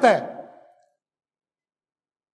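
A man's voice finishing a word of a lecture and trailing off within the first half second, followed by dead silence.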